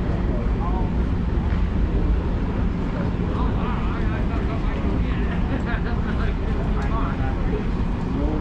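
Background chatter of people talking, over a steady low rumble.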